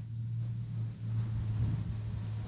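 A low, steady hum under faint background noise.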